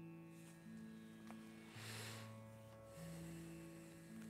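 Harmonium playing slow, held notes in the low register, stepping to a new note every second or so, with a short hiss of noise about two seconds in.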